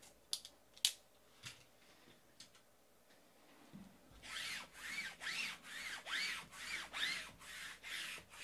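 A few light taps as shrink-wrapped cardboard card boxes are pushed into place. About four seconds in, a rhythmic scratching, rubbing sound starts, about three strokes a second.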